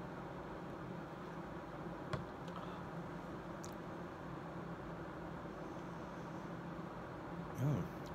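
Steady low room hum while a drink is sipped, with one short click about two seconds in as a plastic cup is set down on the table. A brief closed-mouth "hmm" comes near the end.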